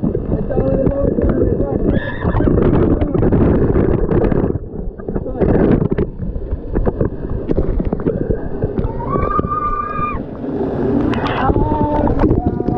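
Water pouring and splashing over a GoPro camera, a dense low rush, with young people shouting through it and one long yell about nine seconds in.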